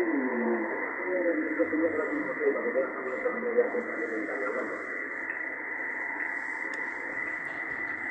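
A distant station's voice received on lower-sideband SSB in the 40-metre band, coming out of an Icom IC-775DSP's speaker: thin and narrow-band over steady band hiss.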